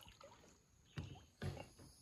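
Two soft knocks on a kayak, about a second in and again half a second later, over faint still-water quiet.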